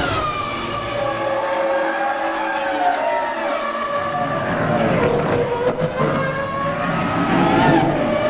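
Formula 1 V10 engines running at very high revs in TV race footage: a high-pitched, pitched engine note. The pitch drops about a second in and again around halfway, then climbs back toward the end, as cars pass and shift gear.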